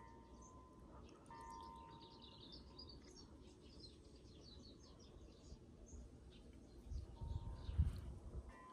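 Birds chirping faintly throughout, with a soft steady ringing tone heard twice in the first few seconds and again near the end. A low rumble comes in during the last second.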